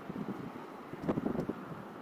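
Wind rushing over the microphone of a moving bicycle, with faint road noise and a couple of brief rattles about a second in.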